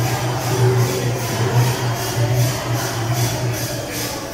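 Devotional kirtan music. Jingling hand percussion beats about three times a second over a steady low tone, and the low tone stops just before the end.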